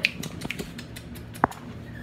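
Scattered clicks and knocks of items being handled on a wire shelving rack, the sharpest at the start and about a second and a half in.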